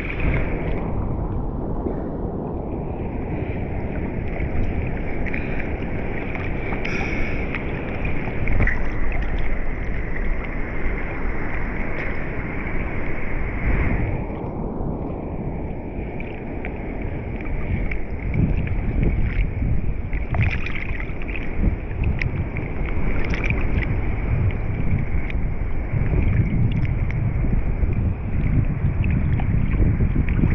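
Seawater sloshing and lapping around a foam bodyboard and a waterproof action camera sitting at the water's surface, with wind on the microphone. The sound turns muffled for a moment twice, shortly after the start and again around halfway.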